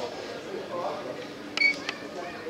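Indistinct voices of players and spectators carrying across a football pitch. About one and a half seconds in there is a brief, sharp, high ringing clink, louder than the voices, and a fainter click follows just before the end.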